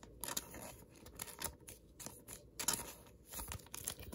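Trading cards being handled and slid against one another: faint, scattered short rustles and ticks.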